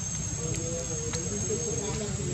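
Insects trilling steadily at a high, even pitch over a low background rumble, with a few faint clicks.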